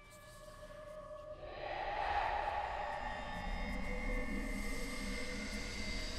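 Horror film score swelling: sustained drone tones and a low rumble build in loudness over the first two seconds, then hold steady.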